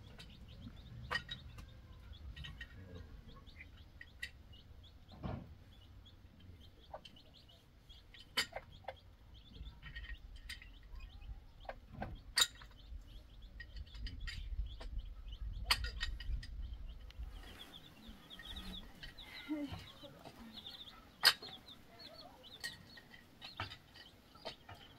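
Chickens clucking faintly, with scattered sharp clicks and taps that are the loudest sounds. A low rumble fades out about two-thirds of the way in.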